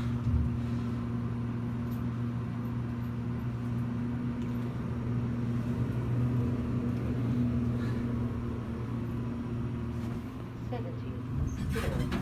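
Steady low hum inside a moving Otis high-rise elevator car as it travels upward.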